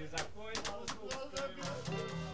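Skiffle band music: guitar with a quick, even beat of sharp percussive strokes, about four a second.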